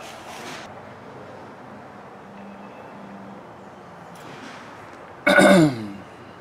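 A man clearing his throat once, a short loud rasp falling in pitch, near the end, over faint steady background noise.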